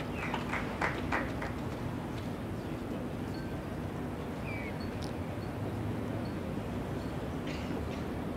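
Quiet outdoor venue ambience: a steady low background hum, a few faint clicks in the first second, and a short high chirp about halfway through.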